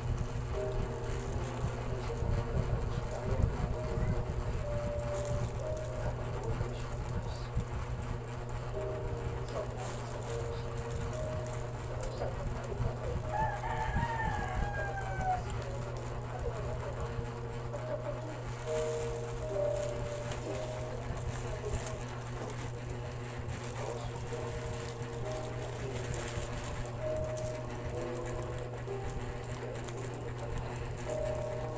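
A rooster crows once, about halfway through, in one drawn-out call that falls in pitch at the end. Under it runs a steady low hum and the held notes of a faint tune.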